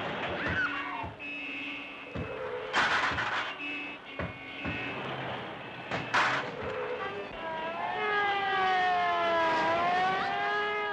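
Cartoon street-traffic sound effects: car horns honking, with sudden crashing bursts about three seconds in and again about six seconds in. From about seven seconds on, swooping, sliding cartoon music takes over.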